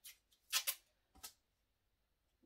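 Masking tape being picked at and pulled off its roll in a few short, sharp rips, all in the first second and a half.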